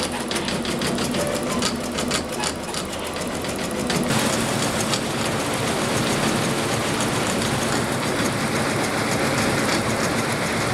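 Tajima multi-needle computerized embroidery machine stitching into velvet: a fast, steady mechanical clatter of needle strokes. It is a little louder from about four seconds in.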